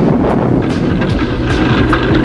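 A Sherman Crab flail tank running: a loud, continuous rumble broken by sharp knocks a few times a second, which fits its chains beating the ground to set off mines.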